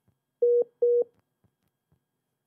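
Two short telephone-line beeps, a single steady tone each about a quarter of a second long, coming close together about half a second in.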